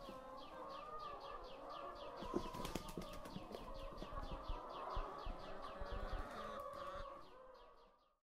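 A flock of laying hens in a hen house, clucking and murmuring together, with a fast even ticking of about four or five beats a second running through it. Scattered soft thumps come in between, and it all fades out about a second before the end.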